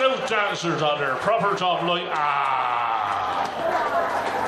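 Indistinct men's voices talking and calling out, with no music playing, including one long drawn-out falling vocal sound in the second half.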